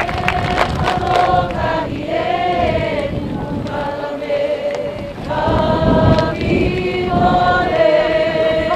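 A group of voices chanting together in long held notes, in phrases of a second or two with short breaks between them, in a ceremonial welcome chant.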